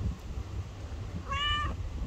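A black domestic cat gives one short, steady-pitched meow about two-thirds of the way through.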